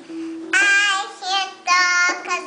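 A young girl singing drawn-out notes while strumming a small toy acoustic guitar. One sung note starts about half a second in and a second near the end, over the ringing strings.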